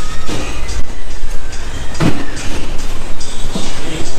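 Loud rumbling and rubbing noise from a camera being carried while walking, with a few irregular knocks.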